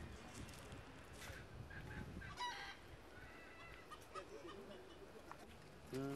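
Faint outdoor ambience with a few short bird calls, the clearest about two and a half seconds in, with fainter ones after it.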